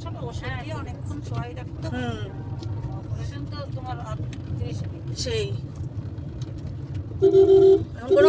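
Steady low road rumble inside a moving car's cabin, with quiet voices talking. A horn sounds loudly for just under a second near the end.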